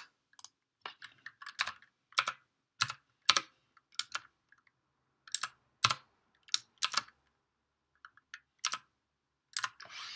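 Keystrokes on a computer keyboard: single key presses typed slowly and unevenly, with short pauses between them.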